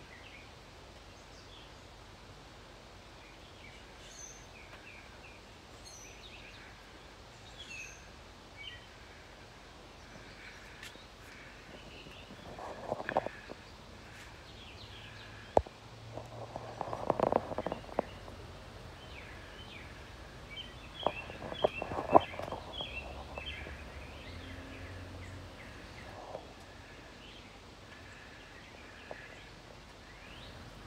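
Small birds chirping in the background throughout, with a few short, loud rustling bursts in the middle.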